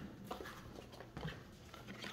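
Faint handling of trading cards: a few light taps and rustles as cards are set down and picked up.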